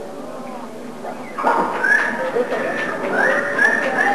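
A man's voice yelling and wailing through a live PA in long, high, strained cries that bend and hold. The cries start about a second and a half in, after a quieter lull.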